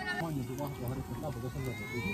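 Faint voices in the background, much quieter than the talking just before.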